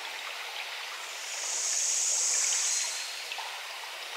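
A soft, even hiss like rain or running water left at the tail of a music track after the song has ended, with a brighter swell of high hiss in the middle.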